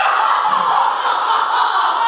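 Several young women's voices laughing and squealing together, breaking out suddenly and carrying on loudly.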